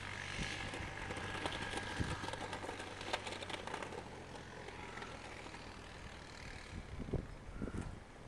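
An engine running steadily with a low hum, slowly growing fainter, with a few low bumps near the end.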